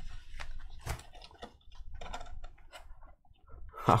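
Soft cloth rustling and small scattered clicks as a black drawstring pouch is loosened and a hard plastic graded-card slab is slid out of it.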